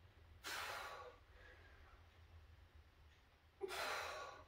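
A man breathing hard while straining in an isometric towel pull: two strong, hissing exhales about three seconds apart, the second near the end.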